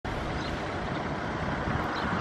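Steady outdoor noise with an unsteady low rumble, typical of wind buffeting the microphone.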